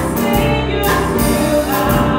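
Gospel music: a choir singing over instrumental backing, with regular percussion hits.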